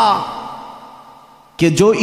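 A man's amplified speech: a drawn-out phrase ends and its echo fades away over about a second and a half, then he starts speaking again near the end.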